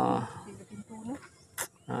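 A man's voice holding a drawn-out syllable that trails off, then a quiet pause broken by one short sharp click about one and a half seconds in.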